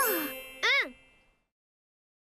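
A bright, bell-like chime rings out briefly and fades, with a short spoken "un" just after it; then the sound cuts to silence.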